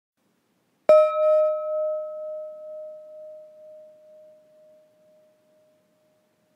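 A meditation gong struck once about a second in, ringing with a clear tone that pulses as it fades away over about four seconds. It marks another minute of the silent meditation timer.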